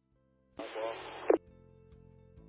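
A brief burst of a voice over a two-way marine radio, thin and tinny, starting about half a second in and cutting off sharply after less than a second, then a faint steady hum.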